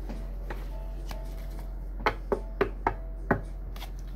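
Tarot cards being picked up and shuffled by hand: a couple of soft clicks, then a quick run of about six sharp taps in the last two seconds, over a steady low hum.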